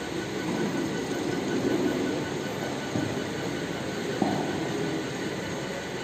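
Steady rumbling background noise, with a soft knock about three seconds in and a sharper click a little after four seconds.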